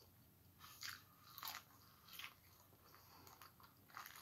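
Close-miked biting and chewing of corn on the cob, a few short crunchy bites spaced under a second apart, the loudest in the first half.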